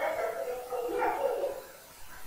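A man's voice, quieter than his speech around it, drawn out in a hesitation sound that fades away after about a second and a half.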